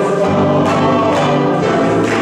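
Men's choir singing in harmony, holding long notes.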